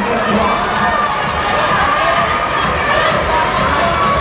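A crowd of spectators cheering and shouting on runners during an indoor track race, many voices overlapping in a steady din.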